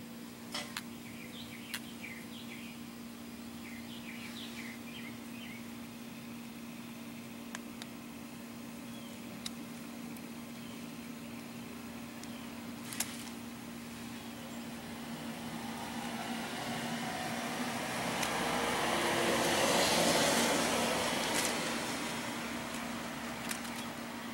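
Outdoor background: a steady low hum with a few faint high chirps and small clicks early on, then a broad rushing noise of a vehicle passing that swells over several seconds in the second half, peaks, and fades away.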